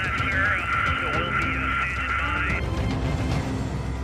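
A thin, narrow-band radio voice says "Roger that, sir, so we'll be standing by," ending a little past halfway. Background music and a steady low drone run beneath it.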